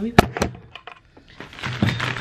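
Two sharp knocks of something set down on a hard surface, a quarter second apart. About one and a half seconds in, a plastic shopping bag starts rustling as a hand rummages inside it.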